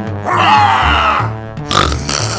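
Background cartoon music with steady bass notes, overlaid about a quarter second in by a cartoon bear's vocal sound that lasts about a second and falls slightly in pitch.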